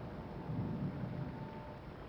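Low, uneven background rumble with a faint steady high hum: the room tone of a bar between lines.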